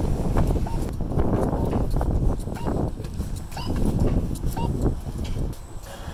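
Footsteps on a concrete yard, a run of irregular knocks over a low rumble.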